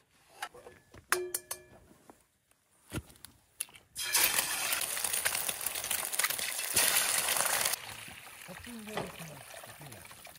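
An egg frying in hot oil in a steel pan on a portable gas stove. After a few quiet seconds of small clicks, a loud sizzle starts suddenly about four seconds in and sinks to a softer hiss near the end.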